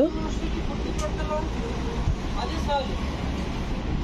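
Steady low rumble of road traffic, with faint voices of other people talking.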